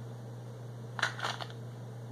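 Plastic blister pack of a fishing lure rustling briefly in the hands, two quick crinkles about a second in, over a steady low hum.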